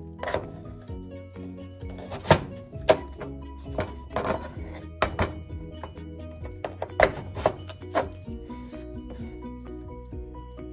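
Chef's knife cutting through raw potato and knocking onto a wooden cutting board: about eight sharp knocks at uneven intervals, over steady background music.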